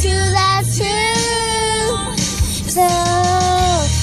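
A young girl singing, holding two long notes one after the other, with a low steady hum underneath.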